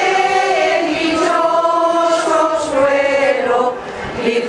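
A crowd singing a procession hymn together in unison, with long held notes that glide slowly between pitches and a short break between phrases near the end.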